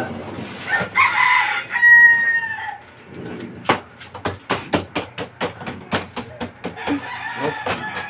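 A rooster crows once, a long call starting about a second in. From about four seconds, a knife chops at a bagged block of ice, giving sharp knocks about three to four times a second: the ice is being broken up to pack around a metal ice cream churn.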